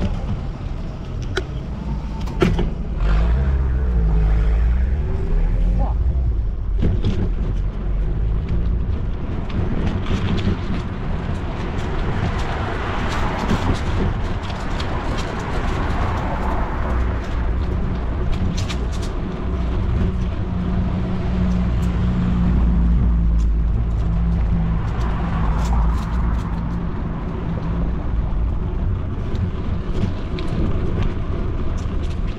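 City street traffic: cars passing on the road alongside, their noise swelling and fading twice, over a steady low rumble.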